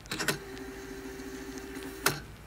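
A large kitchen knife chopping leafy greens on a wooden cutting board: a quick cluster of three or so sharp knocks near the start, with a steady low hum in between.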